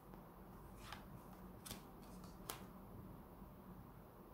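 Near silence with three faint, short clicks a little under a second apart: tarot cards being laid down and slid on a wooden table.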